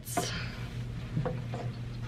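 A cloth towel rubbing and wiping the glass inside an empty reptile tank, a soft swishing that is strongest in the first half-second and then carries on faintly.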